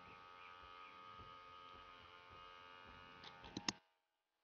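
Small electric honey-suction pump running with a faint, steady hum of several held tones while it draws stingless-bee honey out of the nest's honey pots. A few sharp clicks come near the end, then the sound cuts off suddenly.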